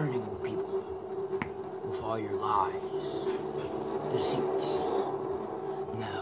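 Indistinct speech, with a short bending vocal sound a little past two seconds in, over a steady low hum.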